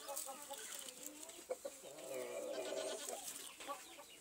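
A pigeon at its nest giving low, pulsing coos with a hand close by, with a few short clicks and rustles in the straw.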